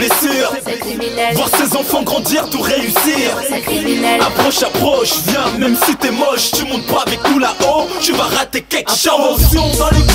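French hip-hop track: a rapped vocal over a dense beat, with a heavy bass line coming in near the end after a brief drop.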